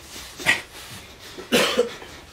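A person coughing twice in a room: a short cough about half a second in, then a longer one near the end.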